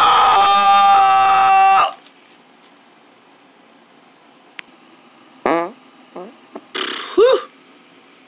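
A voice holding a long, loud wailing cry that cuts off suddenly about two seconds in. After a quiet pause, a few short vocal noises with bending pitch, the loudest near the end.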